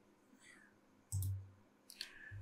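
Computer mouse clicking: two clicks, one about a second in with a soft low thud and another near the end.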